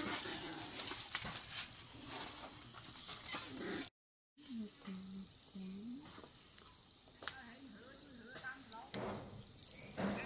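Children's voices in short calls and chatter, with a brief dead gap of silence at an edit about four seconds in.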